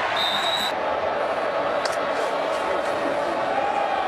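Football stadium crowd noise heard through a TV broadcast, with a referee's whistle blowing one short steady blast near the start, signalling the play dead.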